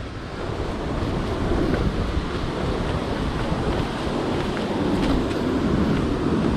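Ocean surf breaking and washing over a rocky shore, with wind rumbling on the microphone; the wash swells a little louder toward the end.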